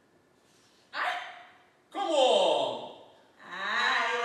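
Singers' voices in a vocal sextet: a short breathy exclamation about a second in, then a voice gliding steeply down in pitch like a sigh, then voices holding a sustained chord rich in overtones from about three and a half seconds in.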